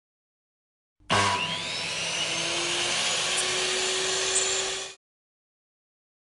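Logo intro sound effect: a machine-like whine over a hiss. It starts about a second in, rises in pitch at first, then holds steady until it cuts off suddenly near the five-second mark.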